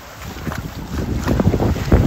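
Wind buffeting the microphone in an irregular low rumble over small waves washing onto the sand, growing louder after the first half second.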